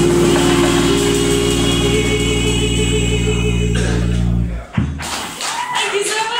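Live jazz: a female vocalist holds a long final note with vibrato over a sustained chord from keyboard and drums, then the band cuts off together about four and a half seconds in with a short sharp hit, and audience noise follows.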